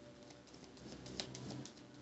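Tarot deck being shuffled by hand: quiet, irregular soft clicks of cards slipping and tapping against each other.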